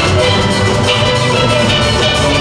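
Steel band playing live: many steelpans sounding together in a loud, continuous ensemble.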